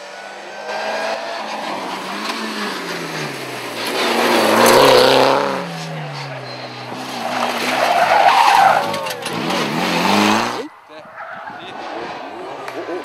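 Rally car engines revving hard as the cars pass at speed, their pitch climbing and dropping through gear changes, loudest about five and eight and a half seconds in. The sound cuts off suddenly near the end.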